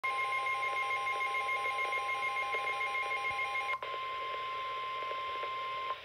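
Midland WR-300 NOAA weather radio sounding a weather alert. The radio's rapid pulsing alarm beeps sit over the steady 1050 Hz warning alarm tone. The beeping stops a little over halfway through, and the steady tone carries on alone until it cuts off near the end.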